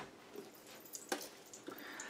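Mostly quiet room tone with a few faint, short clicks, the sharpest about a second in.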